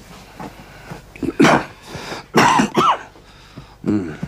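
A person coughing: one short cough about a second and a half in, then a longer coughing bout about a second later, and another cough starting near the end.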